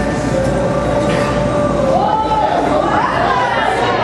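Many voices praying aloud at once in a large hall. One louder voice rises and falls in pitch over the others.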